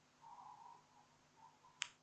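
Near silence: room tone, broken by a single sharp click near the end.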